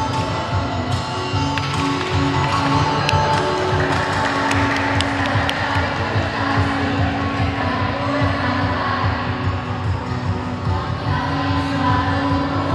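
Live music from a vocal group performance: sustained, held notes over accompaniment, heard through a PA in a large hall.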